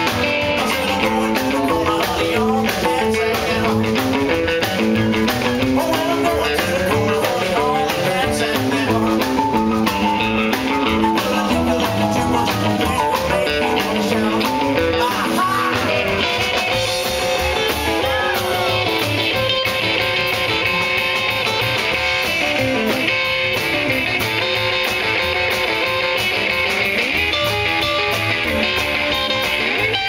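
A live rock and roll band playing: acoustic and electric guitars, upright bass, keyboard and a drum kit, with a man singing at times.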